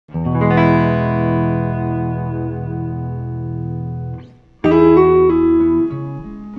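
1958 Fender Stratocaster electric guitar played clean through a 1957 Fender Princeton tweed amp: a chord struck and left ringing for about four seconds, then cut off and a fresh chord struck about four and a half seconds in.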